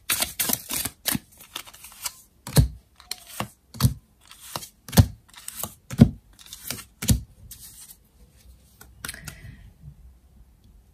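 Tarot cards being dealt from the deck and slapped down onto a table one at a time: quick light clicks at first, then a sharp slap about once a second through the middle, fading to a few faint taps near the end.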